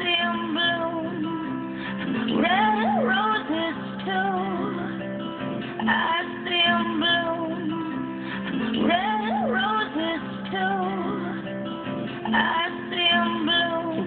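A two-bar loop of a music mix, with strummed acoustic guitar and singing, played back from Pro Tools over studio monitors. It repeats about every three and a half seconds, and the lyric "red roses too" recurs in it.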